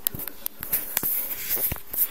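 Handling noise: rustling with many small irregular clicks as the handheld camera is moved.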